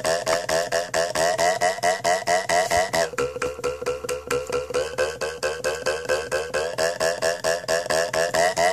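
A quick, even beat of sticks tapped on a cup-noodle bowl and tabletop, about five or six strikes a second, over a backing music track whose held tones shift about three seconds in and again about five seconds in.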